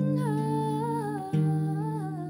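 A woman's voice in a wordless sung melody, drawn-out notes wavering slightly in pitch, over ringing acoustic guitar chords; a fresh chord is struck about a second and a half in.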